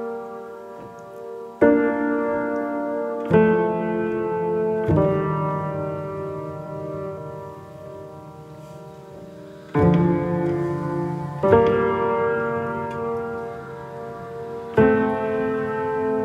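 Solo piano playing slow chords, each struck and left to ring and fade. One chord is held for several seconds in the middle before the next ones come.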